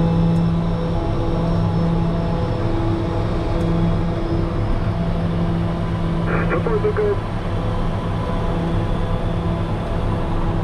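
Steady cockpit drone of the Piaggio Avanti P180's twin PT6 turboprop engines and pusher propellers in flight, a low hum that swells and fades every second or so. A brief voice-like sound comes in about six seconds in.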